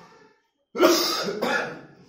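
A man coughing in two quick bursts about a second in.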